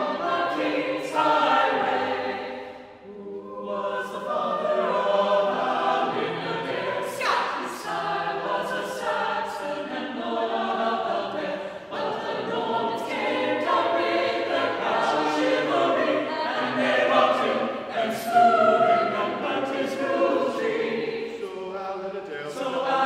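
A mixed choir of men's and women's voices singing an a cappella part-song in several voice parts, with a brief break in the sound about three seconds in.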